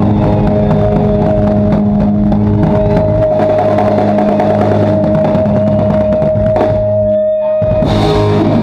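Live rock band, drum kit and electric guitars, holding a long ringing chord over drum and cymbal hits, likely the close of the song. The sound thins out briefly about seven seconds in, then the band comes back in.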